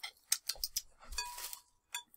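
Faint crinkling and clicking of a clear plastic bag being handled, with a soft knock a little over a second in.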